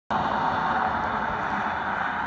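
Tyre and road noise of a car driving away along a highway, fading slowly as it recedes.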